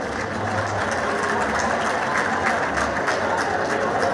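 Football stadium crowd applauding, with many hand claps over a general crowd din.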